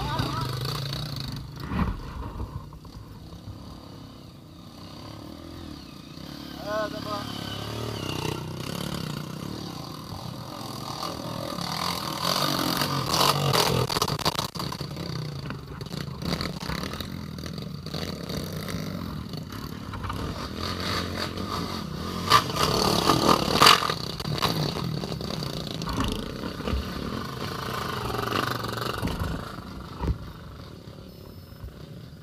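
Honda Bros trail motorcycle's single-cylinder four-stroke engine labouring up a rocky dirt climb. It runs steadily with repeated revving surges as the throttle is worked, loudest in two bursts about halfway through and again about three quarters of the way in.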